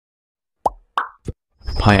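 Three quick pop sound effects about a third of a second apart, each short and pitched, as an animated intro appears. A voice then begins, saying "Hi".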